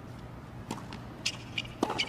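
Tennis ball hit by rackets: a serve and the start of the rally, a few sharp pops with the loudest near the end, over a low hum of stadium ambience.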